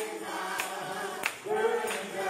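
Male vocal group singing together in harmony, with sharp regular hits on the beat about every two-thirds of a second.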